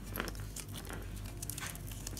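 Glitter fabric crinkling as fingers fold and pinch it, with small scattered clicks, over the steady low hum of a tumble dryer running in the background.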